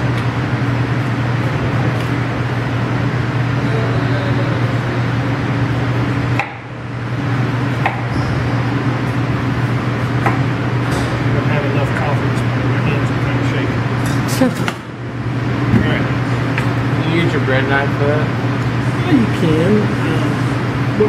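A steady low hum runs throughout and drops out briefly twice. Over it come a few scattered knocks of a knife on a cutting board as an onion is sliced, and faint voices near the end.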